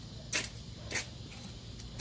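Two short rustling scuffs about half a second apart, the movement noise of someone walking with a handheld phone, over a faint steady low rumble.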